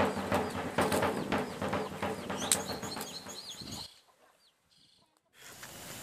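Rapid drumming over a low steady drone fades out, with birds chirping over it about two and a half seconds in. A moment of silence follows, then faint outdoor background with a few more chirps.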